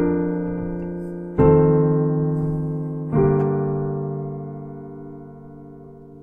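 Piano playing a four-part chord progression, three chords struck about a second and a half apart and left to ring, the last one fading away. It is a cadential 6-4, then V7, then a deceptive resolution to vi in which the soprano's leading tone falls instead of rising.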